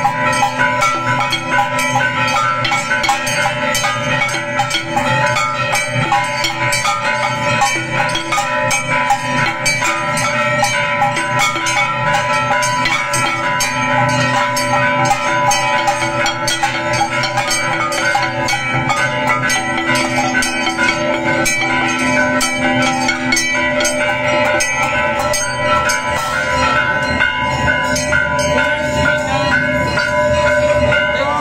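Hindu temple bells rung rapidly and without pause for aarti, dense clanging strikes over a steady metallic ring.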